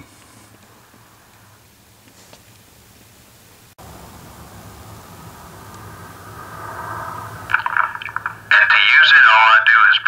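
CB radio PA system through a bullhorn speaker: a faint hum at first, then a sound that swells from about four seconds in, and a loud, tinny, narrow voice coming through the horn for the last second and a half.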